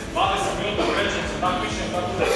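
Indistinct men's voices talking, with no other sound standing out.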